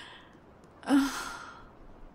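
A woman's breathy sigh about a second in, with a brief voiced start that trails off into breath.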